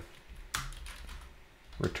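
Typing on a computer keyboard: a few keystrokes, with one sharper click about half a second in.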